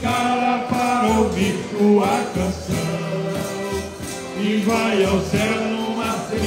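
Live forró-style folk music: a piano accordion playing chords and melody with a bass drum keeping a steady beat about every 0.7 s, and several men's voices singing along.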